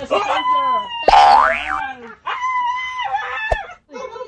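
A cartoon 'boing' sound effect with a steeply rising pitch about a second in, the loudest thing here, among Siberian huskies' drawn-out howling and whining. In the second half comes one long, level howl, ending in a sharp click.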